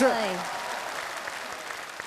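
Studio audience applauding, the clapping slowly dying away.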